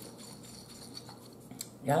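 A few faint sharp clicks as a bottle of Louisiana hot sauce is handled and its cap twisted off over a dinner plate, in an otherwise quiet room.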